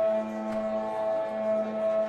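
Ambient drone music: a low note and several higher tones held steadily, gently swelling and fading in loudness.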